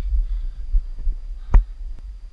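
Low, uneven rumble of wind buffeting a camera microphone on an exposed granite slope, with a single sharp click about one and a half seconds in.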